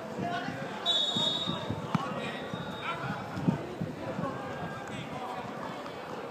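A referee's whistle gives one short blast about a second in, among players' shouts and the thuds of a football being kicked.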